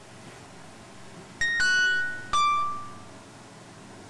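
A three-note descending chime: three ringing notes, each a little lower, starting about a second and a half in, the last one fading out slowly.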